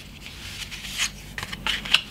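Pencil tracing around a cardboard template on paper: a run of short scratching strokes, the loudest about a second in and just before the end.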